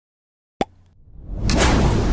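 Silence, then a single sharp click a little after half a second in, followed by a swelling whoosh that hits its peak about a second and a half in and carries on as a loud, deep rumble: a cinematic logo-intro sound effect.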